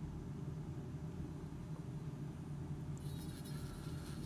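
Steady low electric motor hum with a faint buzz, with no change in pitch or level.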